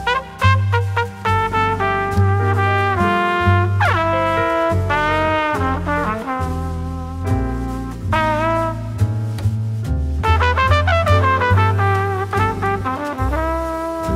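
Instrumental break in a jazz ballad: a horn plays a lyrical solo with scooping, bending notes over bass and piano accompaniment.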